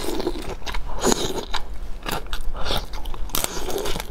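Close-miked biting and chewing of raw shrimp, with irregular crunches and crackles as she bites into the flesh and shell.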